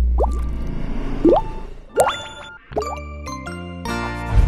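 Channel outro music: a held low bass note with four quick rising bloop sound effects over it, timed with the pop-up icons, then a short run of stepped melodic notes near the end.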